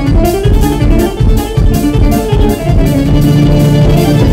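Live polka-style band instrumental: a piano accordion plays the melody over a drum kit keeping a steady beat, with electric guitar and a held bass note coming in near the end.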